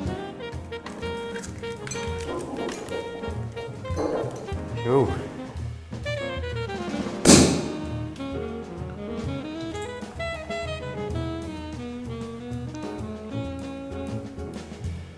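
Jazz background music with one sharp pop about seven seconds in: the cork coming out of a bottle of cava as it is opened.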